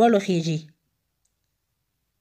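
A voice speaking the end of a Pashto phrase, stopping less than a second in, followed by digital silence.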